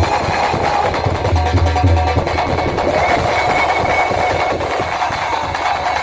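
Live Indian folk music: hand drums keep up a fast, dense rhythm under a few held melodic notes.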